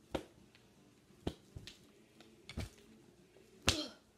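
Hand puppets being knocked and slapped against each other: about five short, sharp smacks at uneven intervals, the last one near the end the loudest.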